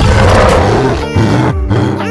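Loud roar sound effect for a giant gorilla, dying away after about a second, over background music.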